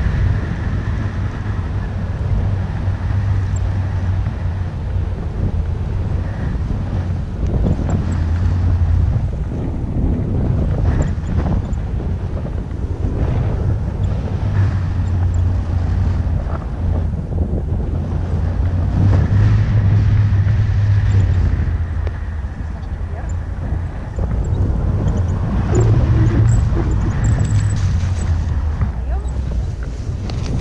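Wind rushing over the camera's microphone during a tandem paraglider flight: a loud, steady low rumble that swells and eases with the airflow.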